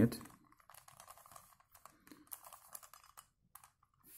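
Faint, quick plastic clicks and clacks of a 3x3 Rubik's Cube's layers being turned by hand, in irregular little runs as the cube is twisted.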